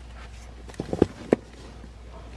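Plastic action figures knocking together as they are moved by hand: a few sharp clacks about a second in.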